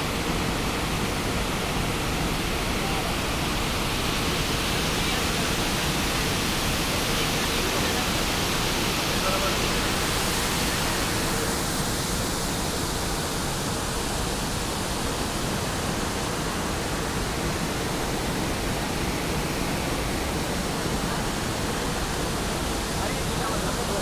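Steady rushing of water cascading through a forced-draught cooling tower's fill, with a faint steady tone under it. Its upper hiss softens about halfway through.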